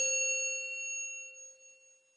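A single bright, bell-like chime sound effect, struck just before and ringing on with a few clear tones that fade away over about two seconds.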